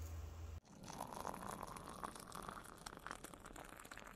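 Faint, irregular crinkling and rustling of packaging being handled, with many small crackles.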